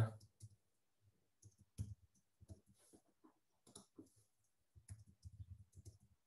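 Faint, irregular keystrokes on a computer keyboard as text is typed.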